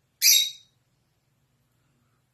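A single short, shrill bird squawk, loud and high-pitched, lasting about half a second just after the start.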